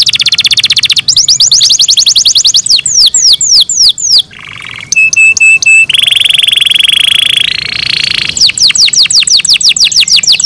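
Domestic canary singing close up: a string of fast trilled phrases, each a rapid repeat of one high note. Downward-sweeping whistles come about three seconds in and again near the end, and the song dips briefly about four seconds in.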